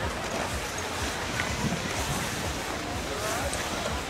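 Steady wind rumble on the microphone over the open snow slope, with faint distant voices now and then.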